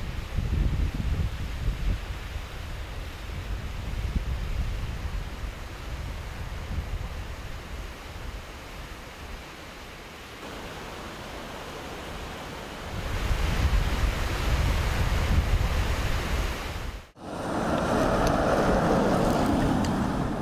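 Outdoor ambience with wind rumbling on the microphone and an even hiss, louder for a few seconds past the middle. After a sudden break near the end, a steadier, louder rush of noise takes over.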